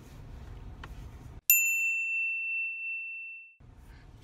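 A single bell-like ding, struck once about a second and a half in and ringing out for about two seconds. The background drops to dead silence around it, as with a sound effect added in editing.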